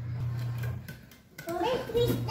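A baby's voice, a short high babbling call that bends up and down from about one and a half seconds in. Under it, a low steady hum cuts off about three quarters of a second in.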